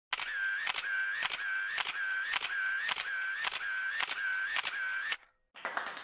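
Camera shutter firing repeatedly, about ten clicks at roughly two a second, each followed by a short whirr like a motor winder, stopping abruptly about five seconds in.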